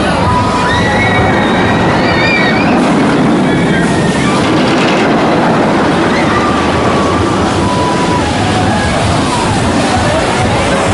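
Steel roller coaster train running along its track close by: a loud, steady rumble with drawn-out high squeals over it.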